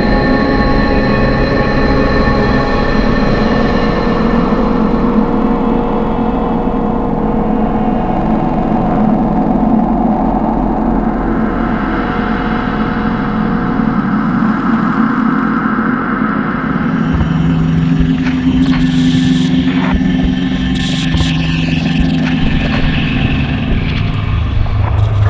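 Film-score sound design: a dense drone of layered sustained tones over a low rumble. About seventeen seconds in it is joined by a few sharp clicks and short high hisses.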